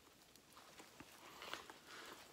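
Near silence: faint outdoor background hiss with a few soft, faint ticks.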